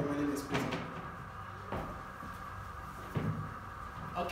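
A few dull knocks spread over a few seconds, with a man's voice briefly at the start, over a steady room hum.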